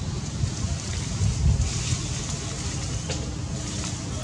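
Low, steady rumble of wind buffeting the microphone, swelling briefly about a second and a half in, with a single faint click near the end.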